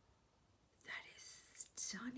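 Near silence, then about a second in a woman's breathy, whispered exclamation of delight.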